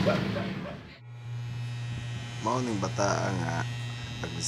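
A burst of rustling noise in the first second, then a red electric hair clipper running with a steady buzz as it trims the hair at the nape of the neck.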